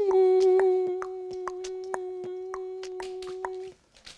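A person humming one long steady note, held for nearly four seconds and stopping shortly before the end. Under it are light regular clicks, about four a second, from a spinning hula hoop.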